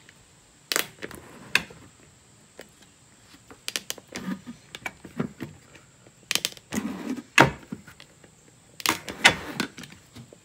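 Irregular clicks and sharp cracks as a hot knife is worked through the top of a white plastic water container, the plastic snapping as the blade cuts; the loudest crack comes about seven seconds in. The plastic is brittle, which is put down to it drying out in the sun.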